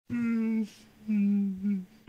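A voice humming three notes. The first two are held steady, the second sagging slightly at its end, and the third is short and slides down in pitch.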